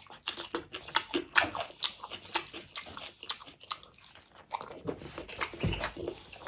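A person chewing a mouthful of rice and raw green chilli close to the microphone: many short, wet mouth clicks and smacks, several a second. A dull thump near the end.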